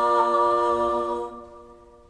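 Female vocal quartet singing a cappella, holding the final chord of a song. About a second in the chord is released and dies away, a faint ring lingering after it.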